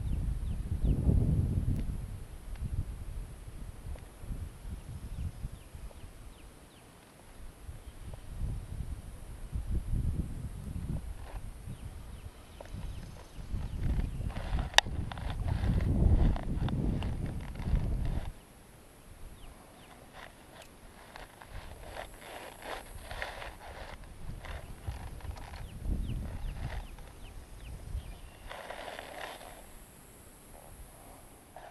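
Wind buffeting the microphone in gusts, a low rumble that swells and fades several times, with rustling and small clicks of handling among the shoreline reeds, busiest in the second half.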